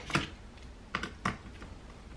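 A few sharp clicks and taps of a small screwdriver and fingers on a laptop's plastic bottom case: one just after the start, then two more about a second in, close together.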